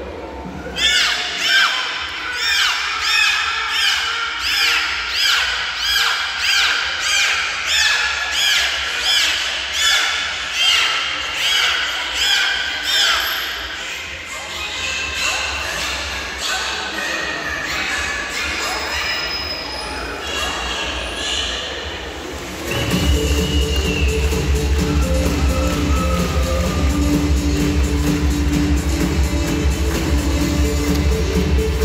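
Trained dolphins whistling in chorus: a quick, regular run of high squealing whistles that rise and fall, for about the first dozen seconds, then a few scattered calls. About 23 s in, loud show music with a heavy beat starts.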